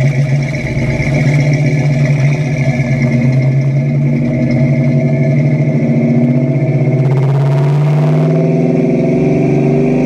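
1966 Ford Mustang engine running through a Magnaflow exhaust, a steady loud drone. A brief hiss comes about seven seconds in, and in the last two seconds the engine note climbs as the revs rise.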